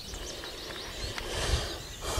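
Quiet outdoor ambience: a faint steady hiss with thin, faint bird chirps, and a low rustling rumble about one and a half seconds in as the handheld camera is moved.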